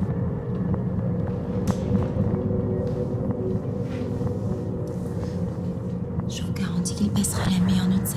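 Low, steady ambient drone of a film score with held low tones. About six seconds in, a voice comes in speaking softly, close to a whisper.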